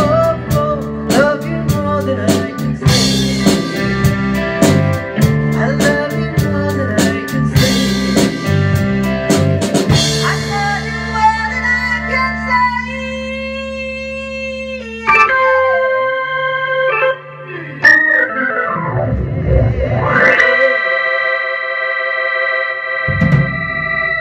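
A live band of drums, bass guitar, electric guitar and keyboard plays a pop ballad. About ten seconds in the drums drop out and the band holds sustained chords on keyboard and guitar, with sliding pitch glides in the middle and a long held chord near the end.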